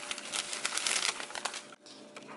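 Thin plastic shopping bag crinkling and rustling as a hand rummages through it, dying away near the end.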